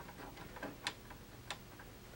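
Faint, irregular ticking and clicking as the control knobs of a 1968 RCA color console TV are worked by hand, with two sharper clicks just under a second in and about half a second later.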